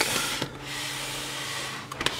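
Camera handling noise: a soft, steady rustling hiss as the camera is moved close around a helmet's hessian scrim cover, with a small click about half a second in.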